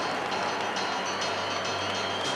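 Large arena crowd cheering and applauding steadily, a dense wash of noise with scattered handclaps.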